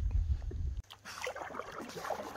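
Canoe being paddled across a lake: a low rumble on the microphone cuts off abruptly just under a second in, leaving quieter paddle and water sounds.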